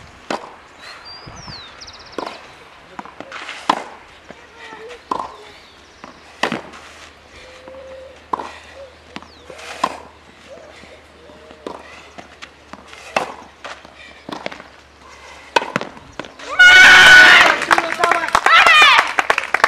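Tennis ball struck by racket again and again in a rally on a clay court, a sharp pop every second or two. Near the end loud shouting and cheering breaks out as the match is won.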